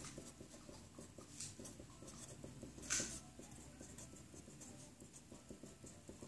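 Faint strokes of a Sharpie permanent marker writing on a sheet of paper, with one louder stroke about three seconds in.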